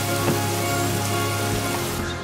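Background music with a steady hiss of rain falling over it.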